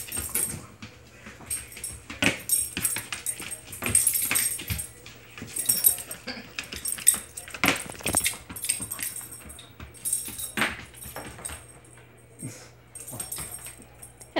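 A dog playing with a rubber toy on a hard tile floor: scattered knocks and clicks from the toy and paws, with the jingle of metal tags on its collar coming in short bursts every second or two.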